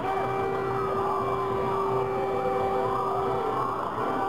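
Several sirens wailing at once, their pitch sweeping up and down and overlapping, over a steady held horn-like tone.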